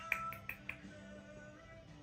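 Four quick finger snaps in the first second, made to get a chihuahua puppy to look up, over soft lo-fi background music.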